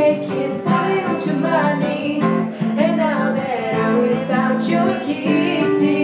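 Acoustic guitar strummed steadily under two women singing a pop ballad.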